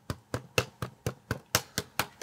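A rapid run of about eight short, sharp clicks, roughly four a second, made by a small handheld object being worked over and over.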